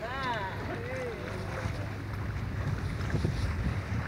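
Steady wind noise on the microphone and water washing along a sailing yacht's hull. A person gives a short rising-and-falling exclamation right at the start, and a fainter one comes about a second in.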